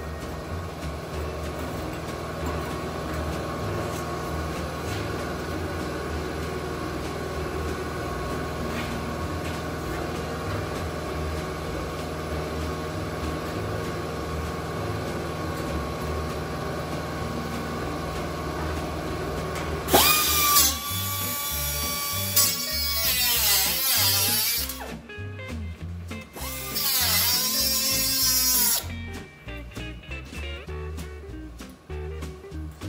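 Guitar background music plays throughout. About two-thirds in, a pneumatic cut-off wheel starts with a sudden high whine and runs in two bursts of a few seconds each. Its pitch dips and recovers as it bites into the sheet-steel cab roof, cutting out old welds.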